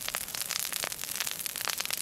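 Burning dry brush on peatland crackling and snapping steadily in a dense, irregular run of sharp pops.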